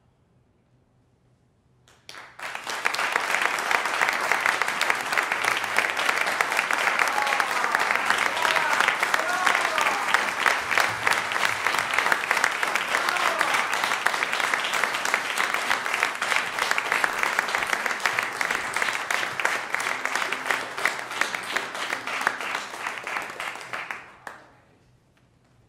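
Audience applauding. It starts about two seconds in after a brief hush and dies away near the end, with some voices mixed into the clapping.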